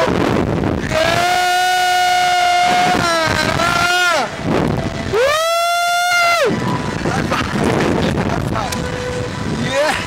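Riders on a reverse-bungee slingshot ride screaming in high-pitched falsetto: two long held screams, one starting about a second in and one about five seconds in. Wind rushes over the microphone throughout.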